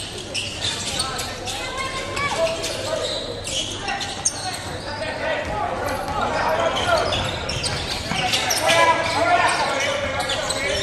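Basketball game sounds in a gymnasium: a ball bouncing on the hardwood court amid players' and spectators' voices echoing in the hall, with the voices loudest near the end.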